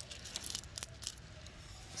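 Faint clicks of rough, uncut sapphire stones knocking together as they are shifted in cupped hands, a short cluster of clicks in the first second.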